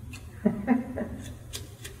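A few faint, sharp clicks about a third of a second apart, from a deck of playing cards handled in the hands, after a short spoken "oh".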